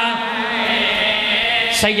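Men's voices chanting a mournful Muharram lament through microphones, in long drawn-out notes that waver in pitch. A single sharp smack comes near the end.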